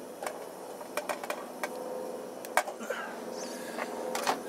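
Gas burner of a Trangia camp stove running with a steady hiss under a frying pan, with several light clicks of a spatula against the pan and cookware.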